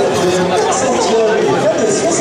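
Spectators at a swimming pool chattering, with many voices overlapping.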